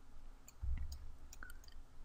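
Faint, scattered clicks of a computer mouse, with a soft low thump about half a second in.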